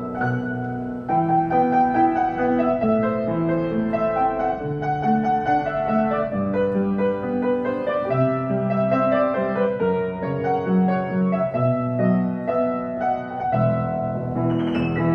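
Eterna upright piano being played, a melody over held chords ringing out.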